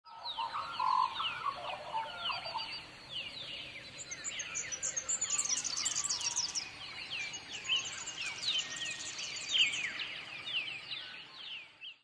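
A chorus of birds calling, with many short, quick chirps that slide downward and overlap throughout. Higher twittering notes come in the middle, and a lower call sounds in the first couple of seconds.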